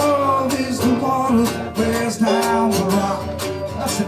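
Live band music: acoustic guitar strumming with band backing and a singing voice carrying the melody.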